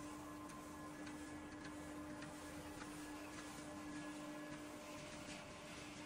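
Faint steady hum of a running wood pellet mill, with scattered light ticks of pellets dropping onto its mesh screen.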